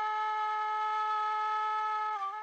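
Background music: a solo wind instrument holds one long, steady note.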